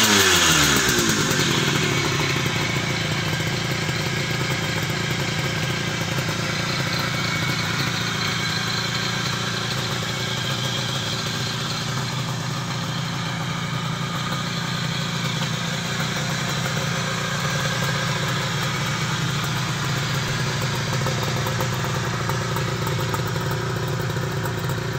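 1969 Yamaha YAS1C two-stroke twin engine dropping back from a rev in the first second or two, then idling steadily.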